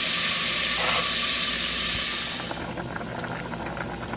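Bacon frying in a stainless steel saucepan: a steady sizzling hiss that thins out about two and a half seconds in to quieter crackling and popping of the rendered fat.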